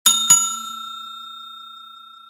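Bell-ding sound effect for a subscribe-button bell animation: a bright ding struck twice in quick succession right at the start, then ringing on and slowly fading.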